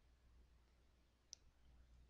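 Near silence, with one faint, short computer-mouse click a little over a second in.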